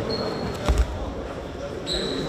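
Judoka slammed onto the judo mat by a throw: a heavy double thud about three quarters of a second in.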